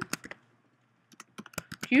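Computer keyboard keystrokes: a few key clicks just after the start, then a quick run of clicks from about a second in as short labels are typed and entered.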